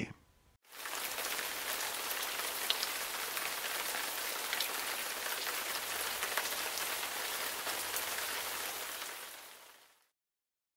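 Steady rain falling, an even hiss with scattered drop ticks, starting about half a second in and fading out near the end.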